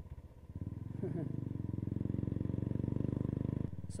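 Royal Enfield Bullet's single-cylinder engine heard from the saddle, picking up revs about a second in and then pulling steadily with a rapid, even beat; it eases off just before the end.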